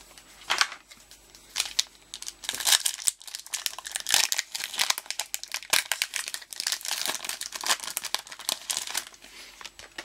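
Foil wrapper of a Pokémon trading card booster pack crinkling and tearing as hands work it open: a few scattered crackles at first, then a dense run of sharp, irregular crackles from about two seconds in, dying away near the end.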